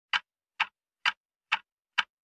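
Sharp, evenly spaced ticks, a bit over two a second, like a metronome or clock tick, opening a hip-hop track.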